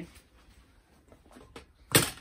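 A heavy weight for a pop-up canopy leg is set down onto the leg's foot plate with one sharp clunk near the end, after a few faint ticks of handling.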